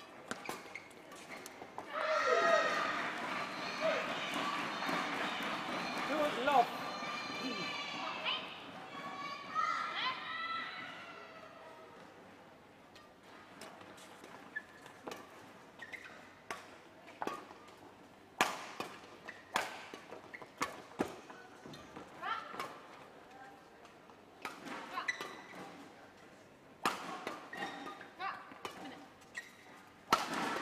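Badminton rally: rackets striking the shuttlecock in a long run of sharp, separate cracks through the second half. Near the start, several seconds of loud shouting voices.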